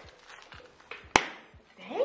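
A single sharp, loud impact about halfway through, with a short ring after it, among faint scattered knocks; a man's 'Damn' comes right at the end.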